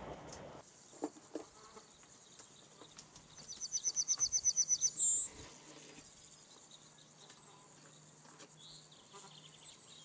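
A small animal's call: a rapid, even trill of about a dozen high chirps lasting about a second and a half, followed by one short, higher note.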